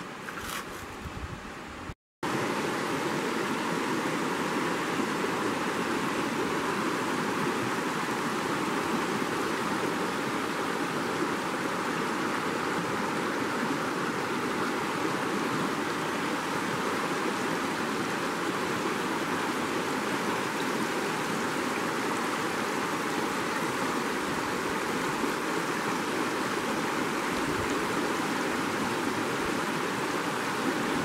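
Shallow, rocky river running over riffles: a steady rush of water. It is quieter for the first two seconds, then breaks off briefly and comes back louder and even, with the white water close by.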